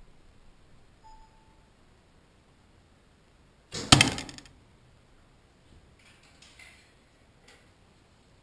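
A single arrow shot from a bow about four seconds in: a brief rush, then a sharp hit that rings out for a moment as the arrow strikes near the candle target. A few faint clicks and rustles follow.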